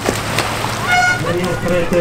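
Voices over steady outdoor background noise, with a short horn toot about a second in.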